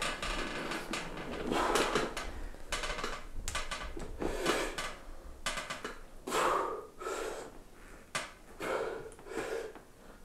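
A man breathing hard, with a short, forceful breath roughly every second, as he strains through a set of weighted neck curls.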